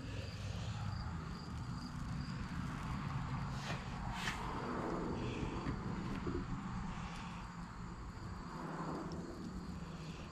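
Thin masking tape being peeled slowly off freshly sprayed candy paint, a faint rustling with a couple of brief sharper rips about four seconds in.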